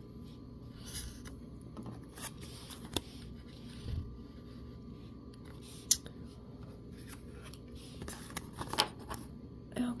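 Tarot cards being slid and picked out of a face-down spread on a table: scattered soft clicks and taps of card against card and tabletop, one sharper tap about six seconds in.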